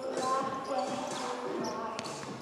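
Several basketballs bouncing on a court during warm-up, with voices talking.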